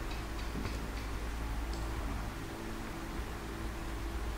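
Steady low electrical hum with faint hiss and a few weak clicks: the background noise of a home voice recording in a pause between words.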